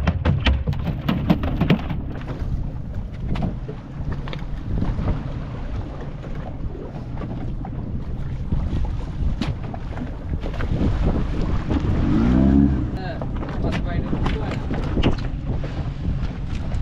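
Open fishing boat at sea: wind buffeting the microphone over the wash of water and a steady low rumble. A landed mahi-mahi slaps against the deck in quick knocks during the first couple of seconds, and a brief rising tone comes about twelve seconds in.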